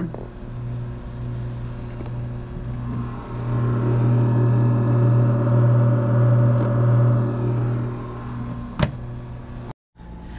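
Countertop automatic ice maker running with a steady low hum, growing louder a few seconds in and easing off again, with a single sharp click near the end.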